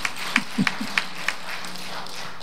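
Steady rhythmic hand clapping, about three claps a second, stopping about a second and a half in, with a few brief voices calling out from the congregation near the start.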